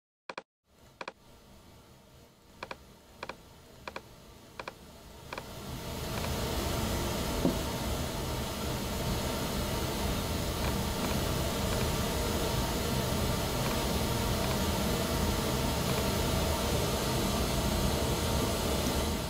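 Pink-noise test signal playing through the room's loudspeakers, a steady even hiss. It comes in faintly and is turned up in steps over the first six seconds, with a few short clicks, then holds steady at its loudest level to raise measurement coherence in the low end.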